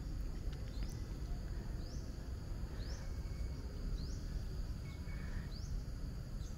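Quiet outdoor ambience: a steady low rumble under a faint, high chirp that rises in pitch and repeats about once a second.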